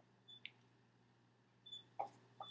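Near silence: room tone, with a faint click about half a second in.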